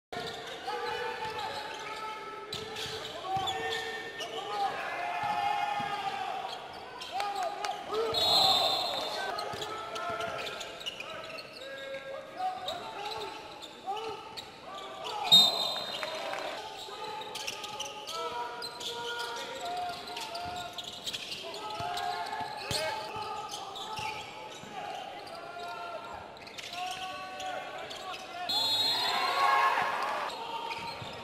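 Basketball game sound on an indoor court: the ball bouncing on the hardwood floor, with voices going on throughout. Short, high referee whistle blasts come about 8 seconds in and again near the end, and one sharp, loud bang about 15 seconds in.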